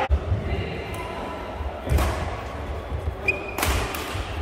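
Badminton racquets striking a shuttlecock in a doubles rally: three sharp hits about two seconds apart, with a short squeak just before the last one.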